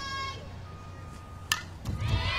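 Ballpark crowd chatter, then about one and a half seconds in a single sharp crack as the pitched softball reaches the plate, followed by a smaller click.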